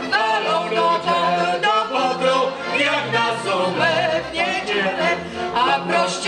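Polish folk band performing a song: a woman singing into a microphone over fiddle and double bass, with a steady bass line underneath.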